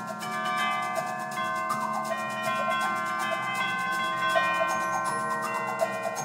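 A symphonic wind band playing live: held chords in the winds with quick short notes running through them.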